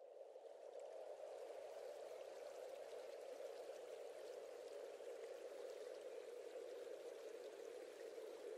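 Faint, steady rushing of running water, like a stream, that sets in right at the start.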